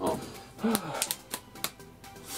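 A run of light, irregular clicks, about eight over two seconds, with a short murmured voice about a third of the way in.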